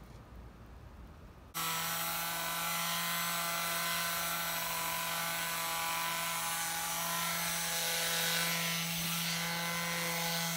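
Electric detail sander running against a pallet board: a steady motor hum with a coarse abrasive hiss, starting suddenly about a second and a half in.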